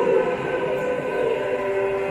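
Slow, droning music of long-held sustained tones: the soundtrack of a stage-performance recording playing on the projector.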